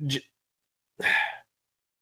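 A clipped syllable of speech, then about a second in a single short audible breath from a podcast host, heard close on the microphone.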